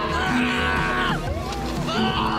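A man yelling in alarm: one long shout, then another starting near the end, over background music.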